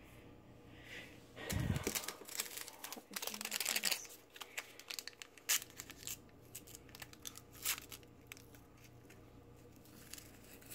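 A paper sweetener packet being torn open and crinkled in the hand, with a soft thump about one and a half seconds in and a few sharp clicks later on.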